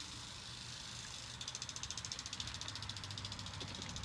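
A rapid, even mechanical ticking over a low steady hum; the ticking fades briefly and returns about a second and a half in.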